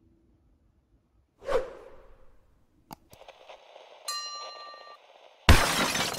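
Edited sound effects for a subscribe end screen. A whoosh comes about a second and a half in, then a sharp click, then a bell-like ding, then a loud glass-shatter crash near the end.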